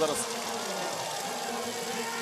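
Steady background crowd noise from spectators at a biathlon finish area, an even wash with no single sound standing out.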